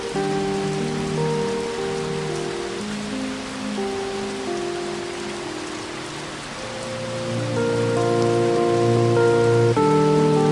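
Steady hiss of heavy typhoon rain under soft background music of long held chords, which grows louder and fuller about seven seconds in.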